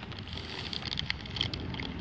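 Steady low outdoor background noise with a few faint clicks.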